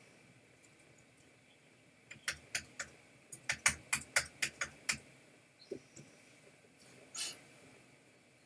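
Computer keyboard and mouse clicking: a quick, uneven run of about a dozen clicks a couple of seconds in, then a short hiss near the end.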